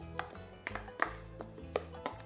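A green plastic grater being knocked against the rim of a glass bowl to empty grated ginger, garlic and onion into it: about five sharp knocks at an uneven pace, with soft background music underneath.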